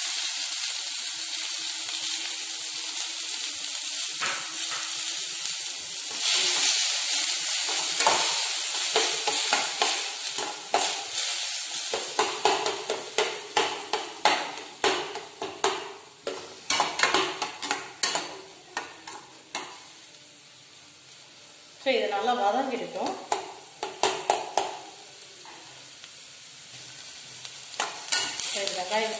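Chopped onions sizzling in hot melted butter in a stainless steel kadai: a loud steady sizzle for about the first twelve seconds. Then a steel slotted spoon stirs them, scraping and clinking against the pan many times, fainter near the end.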